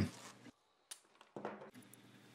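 Near silence between narration lines, with a faint click about a second in and a brief faint noise shortly after.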